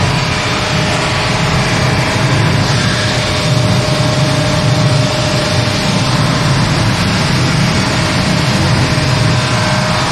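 Automatic granite slab polishing line running: a loud, steady machine drone with a thin, steady whine held over it, the motors and polishing heads working on the wet stone.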